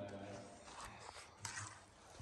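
Faint, distant voices over quiet room tone, with a small click about one and a half seconds in.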